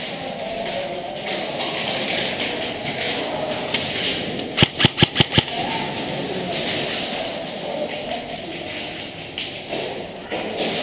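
A rapid burst of about seven sharp shots from a game gun, all within about a second, halfway through, over a steady background noise.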